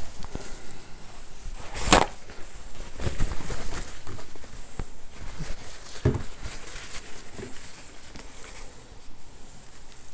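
Handling noises on a wooden desk: one sharp knock about two seconds in, then a few softer knocks.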